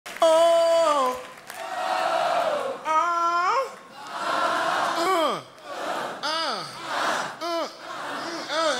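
A man's long wordless vocal cries, some held on one pitch and several sliding down, with an audience cheering and applauding between them.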